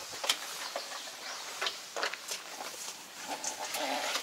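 Scattered light clicks and clinks of metal parts being handled at a tractor's rear hitch while an implement is coupled, over a faint hiss.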